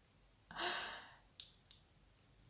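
A woman's short, soft breath out, about half a second in, then two faint clicks.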